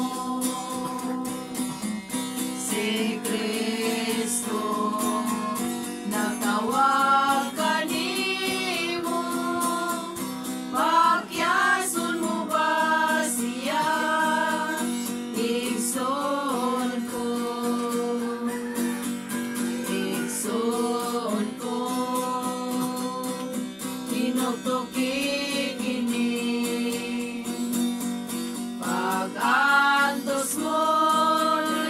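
A group of voices singing a song together, accompanied by an acoustic guitar.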